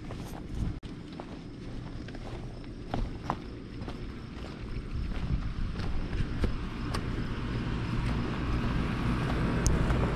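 Wind rumbling on the microphone, with a few scattered footsteps.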